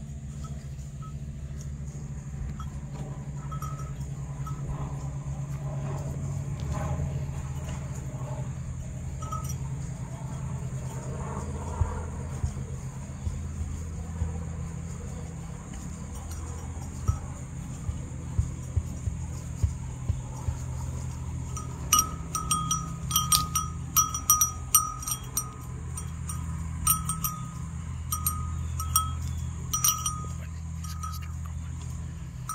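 A small livestock bell clinking irregularly in quick, light, ringing strikes, sparse at first and then dense through the second half, as a sheep wearing it grazes. Under it runs a steady low hum.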